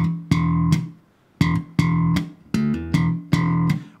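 Enfield Lionheart electric bass played slap style: thumb-slapped notes including a slapped D with a hammer-on to E, each note stopped short by muting. A short group of about three notes comes first, then after a brief pause a longer run of about six.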